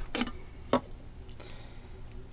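A few light plastic clicks and taps as small plastic toy figures are lifted off and set onto a plastic warp pipe, the clearest about three-quarters of a second in.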